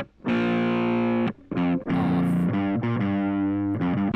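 Distorted electric guitar through a Roland Micro Cube amp, played back from a close-miked Shure SM57 recording taken with the mic off toward the outer edge of the speaker cone, which gives a tone with less high end. A chord rings for about a second and breaks off, then a run of picked notes follows.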